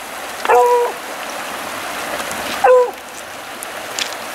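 A dog whining in two short, steady-pitched cries, about half a second in and again near three seconds, excited by the trout being played. Under it, the steady rush of a shallow river running over stones.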